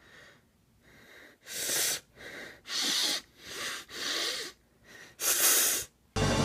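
A person breathing heavily in about nine sharp, noisy huffs and sighs, a second or less apart, the last one the loudest: voiced as a character fuming with anger.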